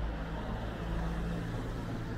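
Road traffic: a vehicle's engine giving a low, steady hum as it goes along the street.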